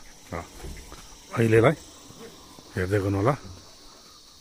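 Steady high-pitched insect chorus running throughout, with a man's voice speaking three short phrases over it.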